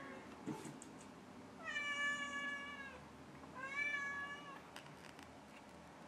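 A domestic cat meowing twice, two drawn-out calls about a second each with a slightly falling pitch.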